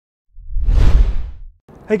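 Whoosh sound effect of a logo intro: one deep swish that swells and fades over about a second. A man's voice says "Hey" right at the end.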